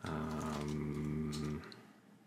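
A man's low, drawn-out hesitation sound, a steady gravelly 'uhhh' held for about a second and a half before it stops, with a faint key click or two.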